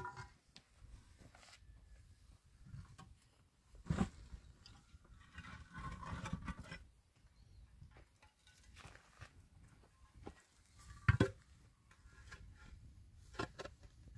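Hollow concrete blocks being handled and set down: a few dull knocks as blocks are placed, the loudest about eleven seconds in, with scraping and shuffling of block on block and grit in between.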